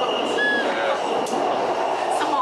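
Inside an elevated electric metro train car in motion: the steady hiss and rumble of the running train, with a faint constant high whine and a few brief high squeaks about half a second in.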